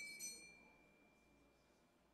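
Altar bells ringing at the elevation of the host, the ringing dying away over the first second while one high tone lingers faintly. Then near silence.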